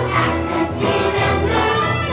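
Children's choir singing a Christmas song in unison over musical accompaniment with steady low bass notes.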